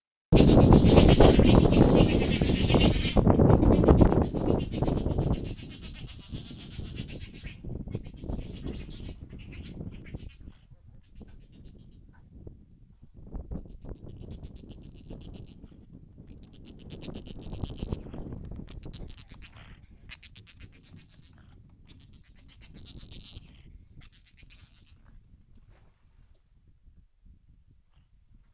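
River otters' mating calls, a rapid chittering, heard through a trail camera's microphone. The calls are loudest in the first five seconds or so, then come in fainter bouts.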